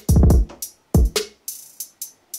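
A programmed UK drill drum loop playing back from FL Studio: crisp hi-hats with quick rolls over deep kick drum hits, and a snare hit about one and a half seconds in.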